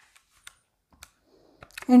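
Buttons of a handheld electronic calculator being pressed: a few faint, irregularly spaced clicks as a figure is keyed in.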